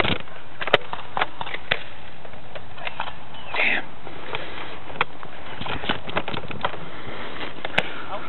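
Steady rushing noise of a handheld camera being carried and moved, with scattered irregular clicks and knocks. A short distant shout comes about three and a half seconds in.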